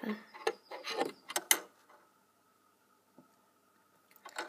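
A few sharp clicks and taps of fingers handling a metal zipper foot on a sewing machine's presser-foot assembly in the first second and a half, then quiet with only a faint steady hum.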